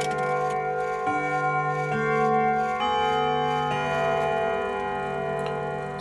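Intro music of slow, sustained chime-like notes, a new note about every second, stopping as speech begins at the end.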